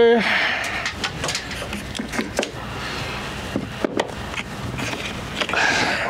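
Scattered light clicks and knocks of vinyl J-channel trim being pushed up and fitted against a porch ceiling, mixed with quiet talk.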